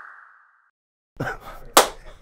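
A short click with a brief fading ring, then quiet laughter and one sharp hand clap near the end.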